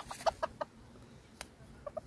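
A chicken clucking in a quick run of short notes, then clucking again near the end. There is a single sharp click about halfway through.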